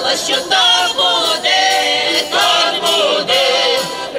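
A mixed folk choir, women's and men's voices together, singing a folk song.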